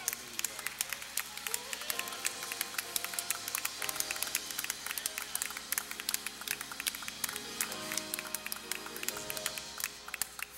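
Church choir and congregation clapping their hands over gospel music, many irregular handclaps over held keyboard tones and voices.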